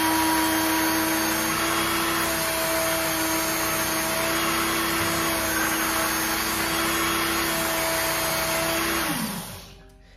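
A Work Sharp electric belt knife sharpener runs with a steady motor whine while a knife is drawn through its 20-degree guide against a honing belt. The motor is switched off about nine seconds in and winds down with a falling pitch.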